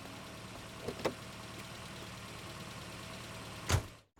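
Tata Sumo police jeep's engine idling steadily, with two light clicks about a second in and a single louder thump near the end.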